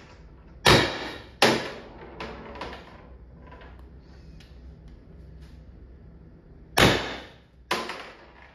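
CO2-powered less-lethal marker, its CO2 restrictor drilled to 1.6 mm, firing: four sharp reports in two close pairs, one pair about a second in and the other near the end.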